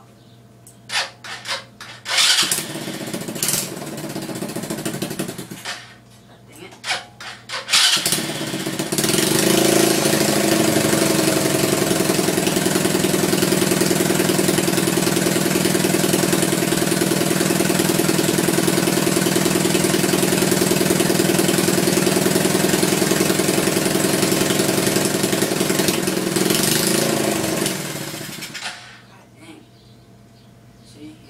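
Cold start of a 125cc ATV engine after months of sitting: it catches about two seconds in, runs roughly for a few seconds and dies, then is cranked again and catches about eight seconds in. It runs steadily and loud, its exhaust loose, until it stops near the end.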